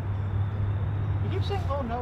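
A steady low rumble, with faint voices starting near the end.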